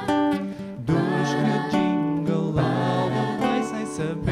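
Small vocal ensemble singing in harmony to a nylon-string classical guitar, the phrases changing about once a second.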